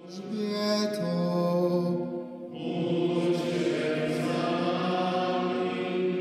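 Sung chant: voices holding long, slow notes in two phrases, with a short break about two seconds in.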